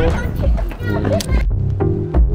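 People talking and laughing over background music; about one and a half seconds in, the voices cut off and only electronic music with a steady beat remains.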